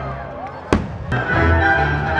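Orchestral music playing, with a sharp firework bang just under a second in and a fainter one a moment later.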